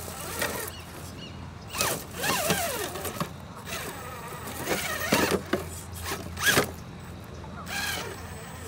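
Electric motor and gear drive of an RC rock crawler whining in short bursts of throttle, the pitch rising and falling as it climbs over rocks. It is loudest about five and six and a half seconds in.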